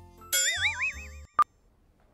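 A cartoon boing-type sound effect, a warbling tone rising in pitch, lasting about a second. Then one short electronic beep near the end, the first tick of a countdown timer.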